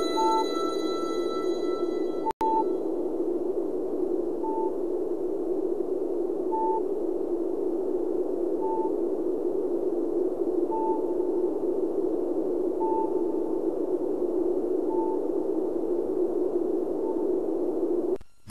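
A steady low hiss with a short high beep repeating about every two seconds. A held musical chord fades out in the first two seconds, cut by a brief dropout.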